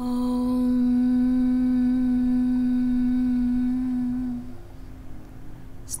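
A woman's voice chanting a long, held 'Om' on one steady pitch, fading out after about four and a half seconds.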